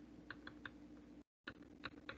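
Near silence with about six faint, light clicks of a stylus tapping on a pen tablet during handwriting.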